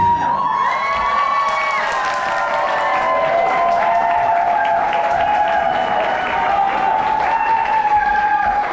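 Audience clapping and cheering at the end of a dance performance, with the music stopping right at the start.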